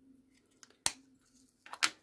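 Small plastic bags and containers being handled and set down on a table: one sharp click a little under a second in and a second, rougher clatter near the end, over a faint steady hum.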